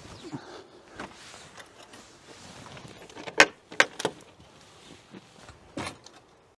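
Wooden garden gate being opened: the metal ring latch handle and latch clacking. There is a quick cluster of sharp clacks a little past the middle and another knock near the end.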